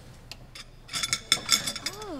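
Kitchen sound effect of dishes and cutlery clinking, a run of light clinks starting about a second in, with a voice saying "Oh" near the end.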